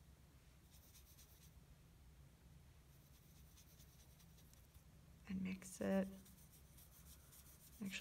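Faint scratchy strokes of a watercolour brush scrubbing and mixing paint on paper, over a low steady hum. A short murmur of voice comes a little past the middle.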